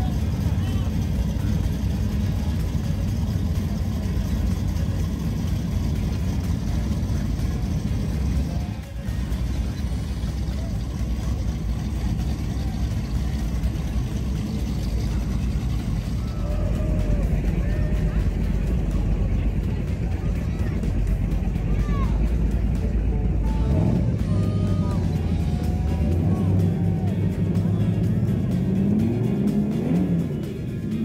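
High-performance powerboat engines running at idle speed, a deep, steady rumble under background music. Near the end an engine revs up.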